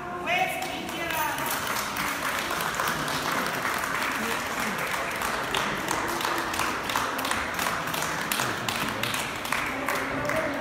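Audience applauding, with many sharp hand claps, building up after a voice in the first second and carrying on steadily.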